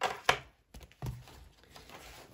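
A ring binder, pen and papers being handled and set down on a tabletop: two sharp knocks close together at the start, a softer thump about a second in, and light handling noise between.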